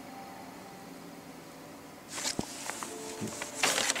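Quiet room tone, then about halfway through a paper sheet and hands rustling, with a single sharp click and louder rustling near the end.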